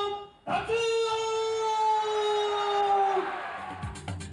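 Japanese ring announcer calling out a wrestler's name in the drawn-out ring-introduction style, holding the final vowel for about two and a half seconds, its pitch sinking slightly before it trails off.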